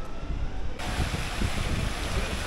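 Steady rushing hiss of fountain water spilling over a stone basin into a pool. It cuts in abruptly about a second in, over wind rumbling on the microphone.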